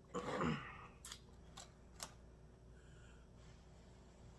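Close-up eating sounds of spicy instant noodles: a short breathy mouth sound with a falling voiced tone at the start, then three sharp wet smacking clicks of chewing.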